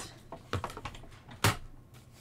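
A die-cut cardstock strip being handled and repositioned on a die-cutting machine's plate: light paper rustles and small taps, with one sharp click about one and a half seconds in.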